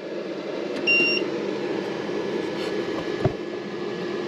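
A single short electronic beep about a second in, from a Renogy inverter-charger's control panel as its button is pressed to change the display, over a steady low hum. A small knock follows a little after three seconds.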